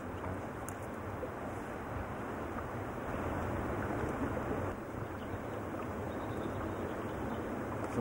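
Steady wind and water noise, with no distinct events.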